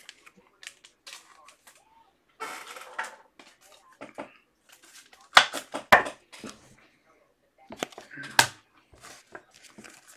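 Trading cards and plastic card holders being handled on a table: scattered light rustles and clicks, with a few sharper taps near the middle and one more near the end.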